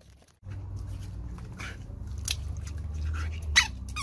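German shepherd nosing and mouthing water balloons: a few short, sharp squeaks and snaps, the loudest just before the end, over a low steady rumble.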